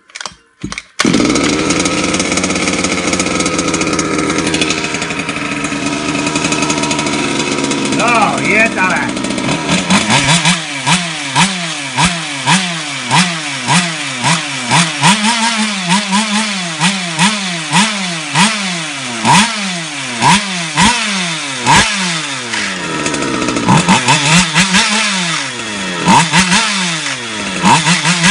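Small petrol engine of a freshly built large-scale FG Evo RC car starting at once about a second in and running at a steady fast idle. From about ten seconds on it is revved in quick repeated throttle blips, each rising and then falling in pitch.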